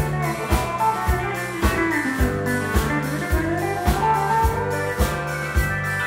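Live country band playing an instrumental break: electric guitar and pedal steel guitar with sliding, bending notes over a steady drum-kit beat of a little under two hits a second.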